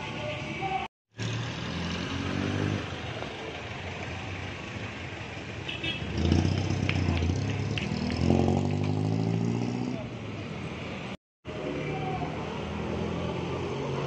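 Street traffic: vehicle engines running and passing, one engine note rising as it pulls away a little past halfway through. The sound drops out briefly twice.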